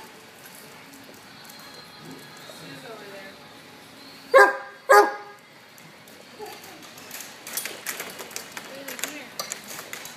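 A basset hound barks twice about four seconds in, half a second apart. Around it are the quieter scuffles and small clicks of several dogs playing, busier in the last few seconds.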